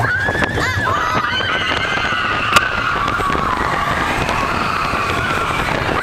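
Riders screaming on a moving mine-train roller coaster, long drawn-out high screams over the steady rumble and wind of the running train, with one sharp click about two and a half seconds in.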